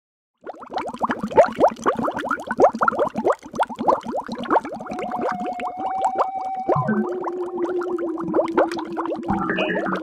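Underwater bubbling sound effect: a dense stream of quick rising blips like bubbles. About five seconds in a steady held tone joins it, dropping to a lower steady pitch about two seconds later.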